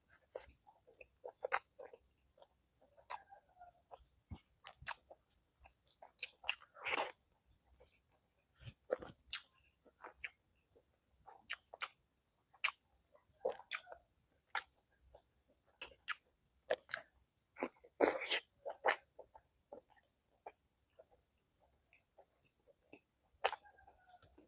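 Close-miked eating sounds of someone chewing spiced boiled eggs and rice by hand: wet chewing, lip smacks and sharp mouth clicks, coming irregularly, with denser clusters about seven and eighteen seconds in.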